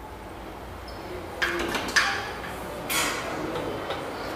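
Metal doors being opened, with three sharp clanks roughly a second apart over a low background hum.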